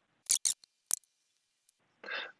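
A few short, sharp clicks: three in quick succession within the first second, then a faint one near the end.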